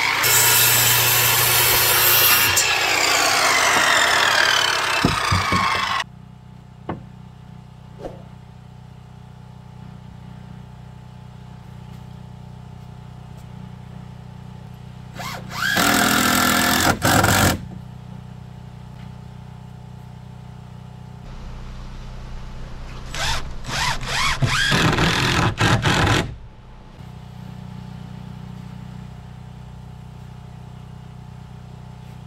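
A corded circular saw running with its pitch falling as it winds down, for the first few seconds. Later a cordless drill runs in one longer burst, then in a quick series of short bursts.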